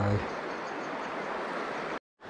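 River water flowing steadily, an even rushing sound.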